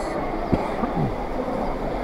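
Steady background hubbub of a busy covered market hall, with faint distant voices and a single sharp knock about half a second in.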